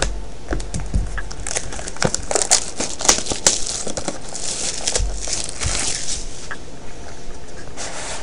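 Plastic shrink wrap being cut and torn off a factory-sealed trading-card box, crinkling and crackling in a run of short bursts.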